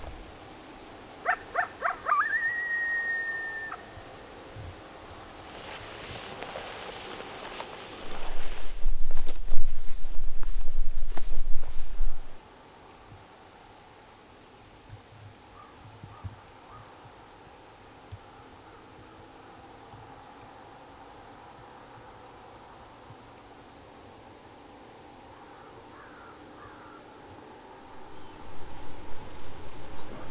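A wild animal calling: a few short yips, then one long held note. A loud rush of noise follows for several seconds in the middle. Near the end a faint steady high chirring of insects begins.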